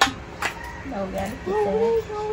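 Two sharp clicks, one at the start and one about half a second in, then a person talking through the second half.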